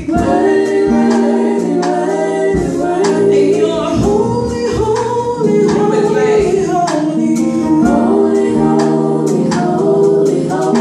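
Women's gospel vocal group singing in harmony through microphones, backed by held electric keyboard chords and a drum kit.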